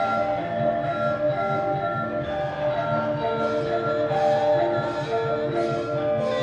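Javanese gamelan playing: metallophones ring held notes that step from pitch to pitch over a fast, even low pulse.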